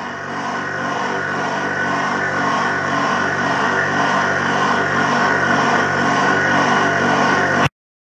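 A steady buzzing drone, slowly growing louder, that cuts off abruptly near the end.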